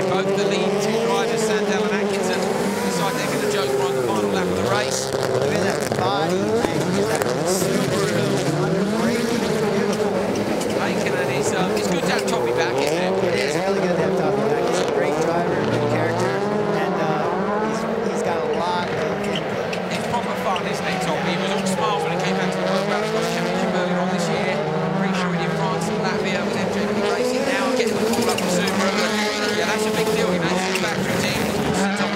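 Several rallycross supercars racing in a close pack, their engines revving hard with pitches rising and falling through gear changes and corners.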